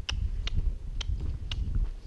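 Walking on sand behind a ground-driven miniature donkey: a low rumble with a sharp click about twice a second, in step with the walking.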